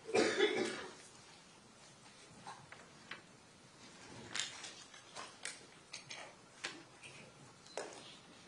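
A person coughing once, loudly, at the start, followed by scattered faint clicks and knocks.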